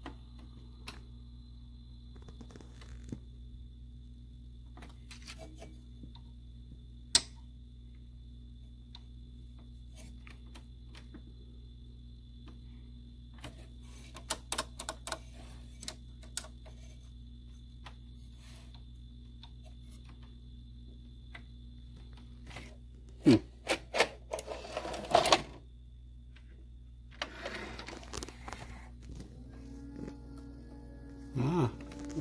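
Open 1984 JC Penney 5053 VHS VCR running with a steady hum while its tape transport mechanism gives scattered clicks and clunks, with a louder cluster of clatter about 23 to 26 seconds in. The owner thinks the deck needs new belts and idlers.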